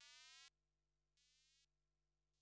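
Faint electronic synth echoes: a short synth tone repeating in a delay, heard twice about a second apart, each repeat quieter than the last and gliding slightly upward in pitch as the music dies away.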